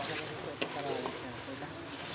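Metal spoon stirring meat curry in an aluminium pressure cooker pot, scraping through the sizzling masala, with a sharp knock of the spoon against the pot about half a second in.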